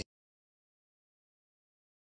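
Dead digital silence after a voice cuts off abruptly at the very start: the speaker's microphone in an online call has switched off.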